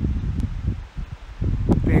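Wind buffeting the microphone: an uneven low rumble that swells and drops. A man's voice comes in near the end.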